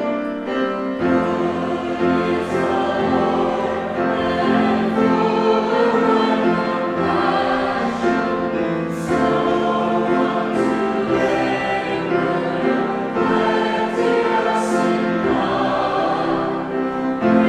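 A church congregation singing a hymn together, many voices holding long notes.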